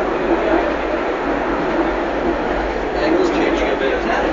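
Funicular railway car running along its steep track: a steady rumble of wheels on rails, with voices in the background.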